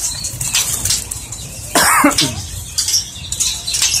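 Small caged birds fluttering and hopping about in a wire cage, with one short, louder sound falling in pitch about halfway through.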